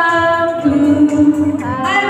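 A woman singing into a handheld microphone, holding long notes; her voice steps down to a lower note about halfway and slides up again near the end.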